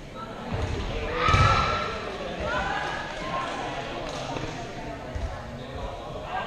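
A dodgeball bouncing on the gym floor: a few separate dull thuds, the loudest about a second and a half in, with distant voices around them.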